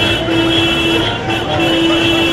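Vehicle horns held in long blasts, one steady tone broken by short gaps after about a second, over the noise of slow traffic and voices.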